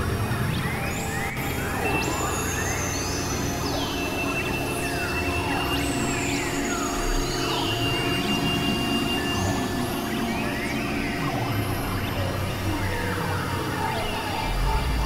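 Experimental electronic synthesizer music: a dense drone covered with many short pitch glides, mostly falling, with a thin high tone held for several seconds in the middle.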